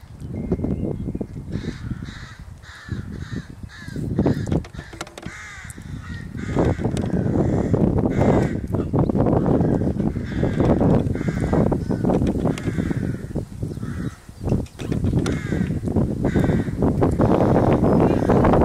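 Crows cawing repeatedly in quick series from the surrounding trees, over a low rumble of wind on the microphone that grows louder from about six seconds in.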